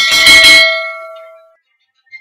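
Bell-ring sound effect of a notification bell being clicked: one loud strike at the start, its several ringing tones fading away over about a second and a half.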